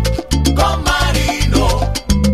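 Salsa music with a repeating bass line and regular percussion.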